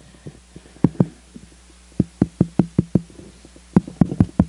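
Fingers tapping and knocking on a handheld microphone to check whether it is live: two thumps about a second in, then a quick run of six taps between two and three seconds, and one more near the end.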